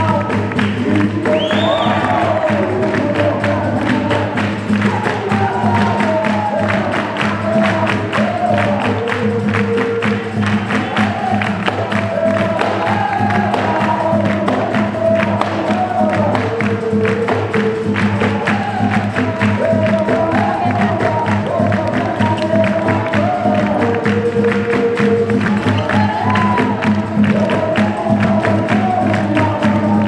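Capoeira roda music: a bateria of berimbaus, pandeiro and drum keeps a steady rhythm under a sung call-and-response, with the circle clapping along.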